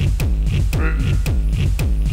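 Computer-generated electronic dance music played live from code: a steady beat of deep kick drums that drop in pitch, with sharp clicks between them.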